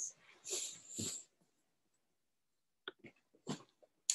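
A person's faint breathing, two short breaths about half a second and one second in, after a slow belly-breathing exercise, then a few light clicks near the end.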